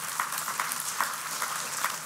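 Congregation applauding, many hands clapping at a steady level.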